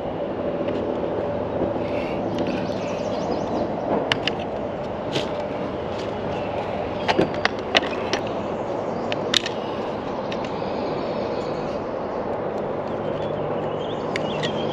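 Small plastic drone and hard carrying case being handled: scattered sharp clicks and knocks, a cluster of them about seven to eight seconds in as the case is opened, over a steady rumbling background noise.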